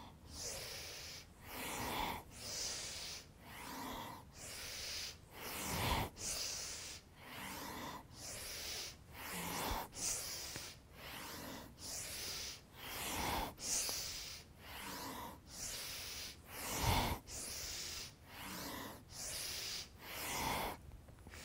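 A woman breathing audibly in a steady rhythm, one inhale or exhale about every second, paced to a side-to-side seated forward fold in yoga, with a few faint low bumps.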